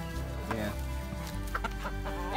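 Backyard hens clucking, a few short clucks, over background music with steady held notes.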